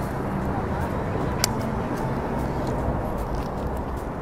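Steady outdoor street ambience with a low traffic hum, and one sharp click about a second and a half in.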